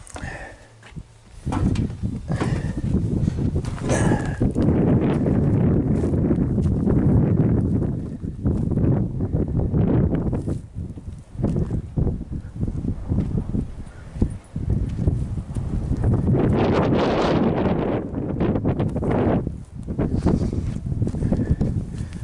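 Wind buffeting the microphone with irregular crunching steps on gravel.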